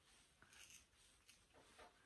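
Near silence, with a few faint scratchy rasps of wiry terrier coat being hand-stripped, long hairs pulled from an Airedale's neck.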